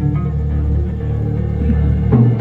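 Live psychedelic rock band playing: sustained low bass and electric guitar notes hold steady, with no drum hits in between.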